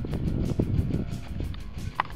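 Background music playing over a low, uneven rumble.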